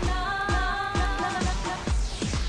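Khmer pop song: a held, wavering vocal note over a steady electronic kick-drum beat, about three to four hits a second.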